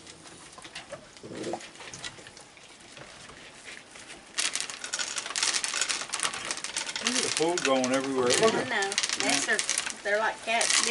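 Raccoons squabbling over food. It starts with faint clicks and patter, then about four seconds in a sudden burst of harsh, hissing scuffle noise. From about seven seconds the young raccoons add wavering, warbling churrs and cries.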